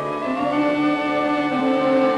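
Orchestral film score, with bowed strings holding and moving between sustained notes.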